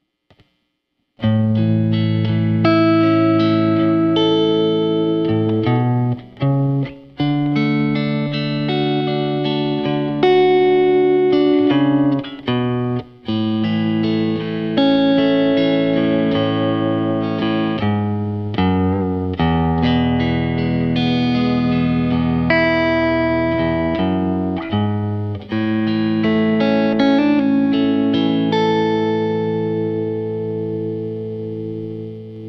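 Fender Telecaster electric guitar through a Fender Mustang modeling amp on its 'Country Deluxe' preset, playing slow, ringing chords as the backing track for a country ballad in A. The chords start about a second in and ring on, with short breaks at a few chord changes.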